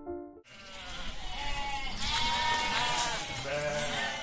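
Sheep bleating, several overlapping calls starting about half a second in.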